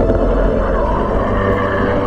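Shallow sea water sloshing and splashing against a camera held half in the water while a person wades through it, a loud, rumbling wash of water noise.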